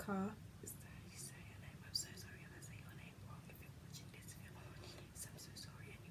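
A woman whispering faintly under her breath, after a short spoken syllable at the very start.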